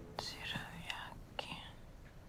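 A young woman whispering a short line softly, close up, with a couple of small mouth clicks.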